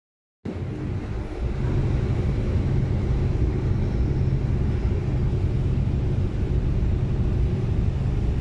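Steady deep rumble of the large passenger ferry MV St. Pope John Paul II's engines as the ship gets under way from the pier, starting about half a second in.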